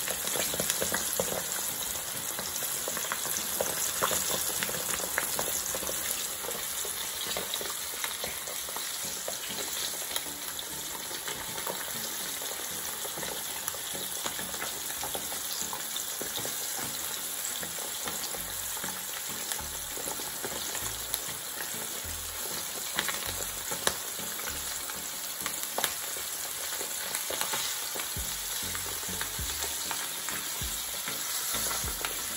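Cornflour-coated chicken wings frying in hot oil in a frying pan: a steady sizzle with scattered crackles and pops.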